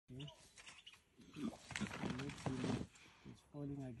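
Low animal vocalizations from a predator at a zebra carcass, mixed with people speaking quietly, most clearly near the end.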